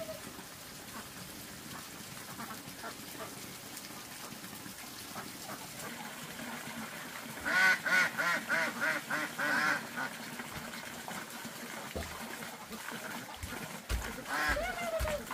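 Domestic ducks quacking: a quick run of about nine quacks over two or three seconds, starting a little past halfway, over a low steady background.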